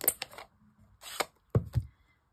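Clicks and a short scrape of a plastic stamp pad case being picked up and opened, then two dull thumps near the end, which she thinks are a neighbour putting their bin out.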